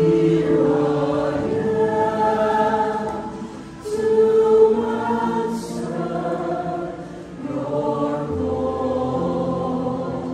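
A mixed choir of women's and men's voices singing a hymn into microphones, in sustained phrases with short breaks for breath about four and seven seconds in.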